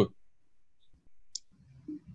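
Quiet room tone with a single short, sharp click about a second and a half in, made at the computer. The tail of a spoken 'hmm' sits at the very start, and a faint murmur near the end.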